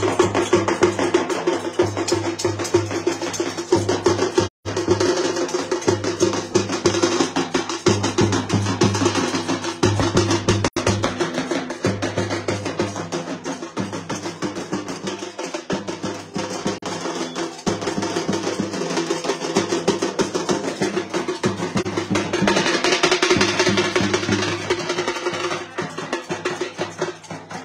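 Dhol and nagara drums beaten in a fast, steady rhythm, the sound cutting out for an instant about four and a half seconds in.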